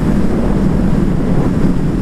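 Suzuki GSR600 naked bike's inline-four engine running at a steady cruising speed, with heavy wind noise over the helmet-camera microphone.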